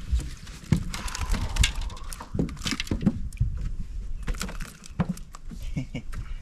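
Irregular knocks and clatter of handling a just-landed largemouth bass on a fishing boat's deck, over a steady low rumble.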